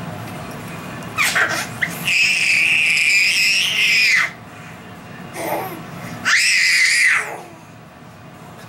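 A baby squealing in a very high, steady pitch: a short squeak a little after one second in, then one long squeal of about two seconds, and a shorter one near the end.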